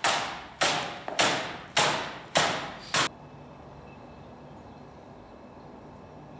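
Bristle broom sweeping in hard, quick strokes over a canvas on a concrete floor: six scratchy swishes about 0.6 s apart, each sharp at the start and fading. They stop abruptly about three seconds in, leaving a quiet room hush.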